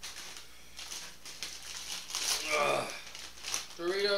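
A foil snack bag of Doritos Sriracha chips crinkling and rustling as it is handled and opened.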